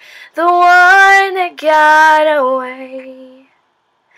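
A woman singing a cappella, with no accompaniment: a quick breath, then two long held notes, the second sliding down in pitch and fading out about three and a half seconds in.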